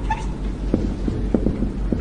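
Marker pen writing on a whiteboard: several short squeaks and taps of the tip on the board, bunched in the second half, over a steady low electrical hum.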